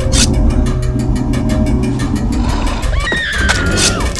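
Horror-film sound design: a low rumbling drone with a sudden whoosh at the start. In the last second a high screeching tone glides slowly downward.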